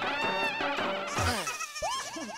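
Comic background music cue with wavering, sliding high tones, ending in a quick rising pitch swoop.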